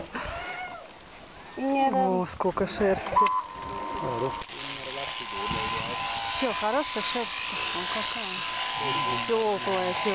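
Electric sheep-shearing clippers running with a steady hum from about three seconds in, under people talking.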